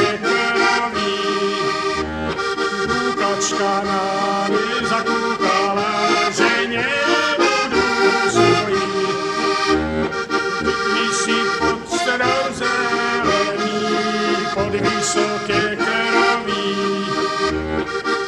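Slovak heligónka, a diatonic button accordion, playing an instrumental passage of a folk tune: a melody on the treble buttons over steady chords, with bass notes sounding regularly underneath.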